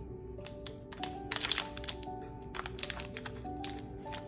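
Soft background music with sustained notes, over a scatter of small crinkles and clicks as the package of a new central-line cap is peeled open by hand.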